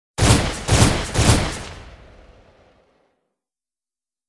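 Channel-intro sound effect: three heavy, gunshot-like hits about half a second apart, the last one ringing out and fading over about a second and a half.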